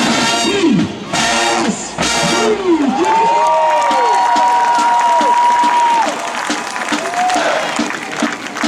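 Marching band brass punches out short loud chords in the first couple of seconds, then breaks off into stadium crowd cheering and screaming. One long, steady high note is held for about three seconds over the crowd.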